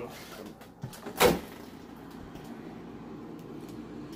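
Refrigerator door being pulled open, with one loud, sharp thump about a second in as the door seal lets go, and a lighter knock just before it.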